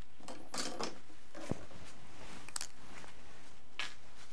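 Gloved hands handling compost and small plastic pots: a few short rustles and scrapes, with a soft knock about one and a half seconds in.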